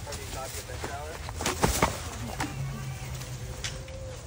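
Saltwater crocodile's jaws clamping on a rack of ribs, with a few sharp cracks about one and a half seconds in, over people's voices.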